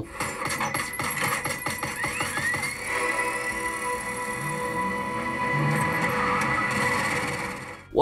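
A video's soundtrack, music with a voice, played through an ultrawide monitor's built-in speakers as a speaker test: a rising sweep about two seconds in, then a long held note that cuts off suddenly near the end.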